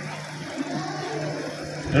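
Faint background music and hall ambience in a brief pause in a man's speech over a public-address system. His voice resumes right at the end.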